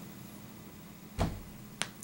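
Quiet room tone broken by a soft low thump a little over a second in, then a single short, sharp click near the end.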